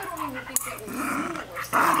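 A pet dog making growling play noises while someone roughhouses with it. A brief sharp knock comes about half a second in.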